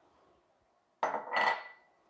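Glassware clinking: a small glass dish knocking against a Pyrex mixing bowl, a short clatter about a second in that leaves a brief ringing tone.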